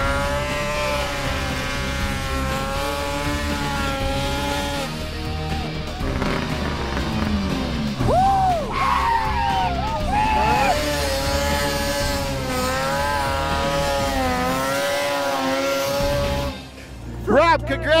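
Arctic Cat race snowmobile engine held at high revs as the sled climbs. Its pitch rises at the start and wavers, drops in a few quick sweeps about halfway through, then holds high again until it cuts back near the end.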